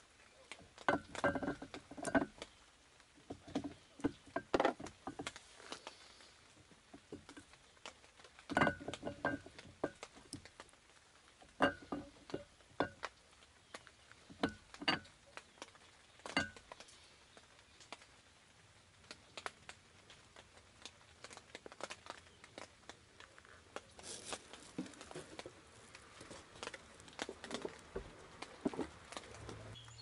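Irregular metallic clinks and knocks as a camshaft is worked and slid out of a cylinder head, coming in clusters through the first half and thinning out later.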